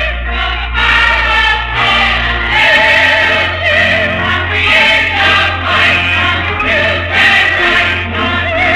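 Church choir singing a gospel selection, the voices wavering with vibrato over steady low accompaniment notes, heard on an old radio broadcast recording with little top end.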